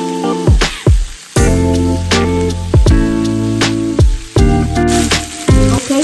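Background music with sustained chords and repeated drum hits, over sliced smoked sausage sizzling in hot oil in a cast-iron skillet.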